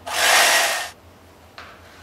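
Electric knife running, its reciprocating blades sawing through a brownie's crunchy crisped-rice and peanut topping: one loud, noisy burst that stops about a second in.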